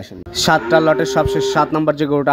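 A calf mooing once, a held, even call lasting about a second, starting about a second in.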